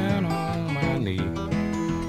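Acoustic guitar playing a slow Piedmont blues, plucked notes over a steady bass line.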